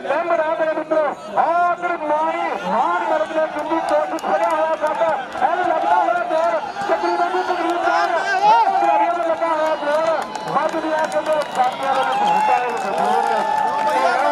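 Several men shouting and calling over one another continuously, raised voices at a kabaddi match as a raider is tackled.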